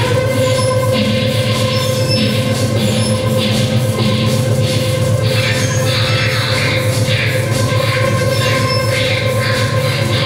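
Experimental electronic soundtrack of a video installation: a steady high drone held over a fast, dense low pulse, with hiss that comes and goes in repeating patches.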